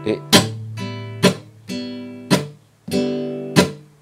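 Flamenco guitar strummed on open strings in a rumba pattern, about two strokes a second, each chord ringing and fading. Twice the ringing cuts off abruptly where the palm comes down on the strings for the muted stroke (étouffé).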